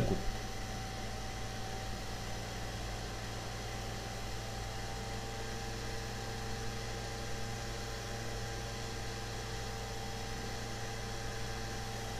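Steady background hum and hiss: room tone with a few faint constant tones and no distinct events.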